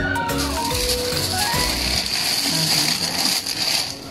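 Clear plastic bag crinkling, a loud, continuous rustle that stops near the end, over background music with short stepped notes.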